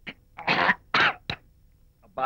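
A man coughing several times in quick succession after a gulp of drink, the middle two coughs loudest.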